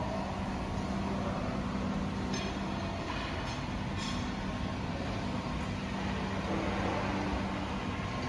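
Steady low rumble of factory-hall background noise, with a faint steady hum that dies away about three seconds in.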